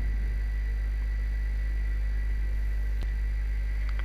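Steady low electrical hum, the mains hum that runs under the narration, with a faint steady high tone over it and a single faint click about three seconds in.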